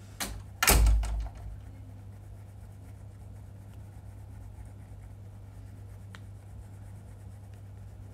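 Two loud knocks in the first second, the second with a deep thump, then faint scratching of a toothbrush scrubbing teeth over a steady low hum.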